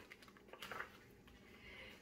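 Faint rustle and light clicks of a picture book's paper page being turned, most audible about half a second in; otherwise near silence.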